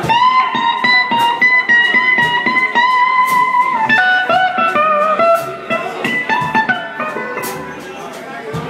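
Electric guitar playing a lead line over drums, live with a band. It opens on a note bent upward and held for nearly four seconds, then runs down through a series of falling notes.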